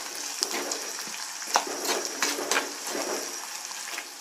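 Garlic cloves, onion and curry leaves sizzling in oil in a clay pot, stirred with a spoon that scrapes against the pot a few times.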